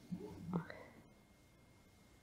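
A man's voice making one brief, soft vocal sound, like a whispered or murmured syllable, in the first half-second, followed by quiet room tone.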